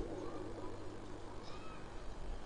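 A quiet pause in amplified speech: a faint steady hum and background noise through the public-address system, with a few very faint, brief wavering sounds.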